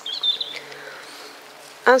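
A small bird chirping: a quick burst of high chirps in the first half second, then a fainter falling note.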